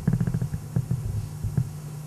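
Hands massaging a shoulder through clothing, picked up as a quick run of low, muffled thumps and rubbing, then a few scattered thumps, over a steady low electrical hum.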